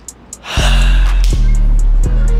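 A sharp gasp about half a second in, over deep, steady bass music that starts with it.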